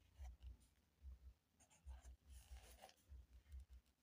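Faint scratching of a pen writing on paper, in a series of short strokes.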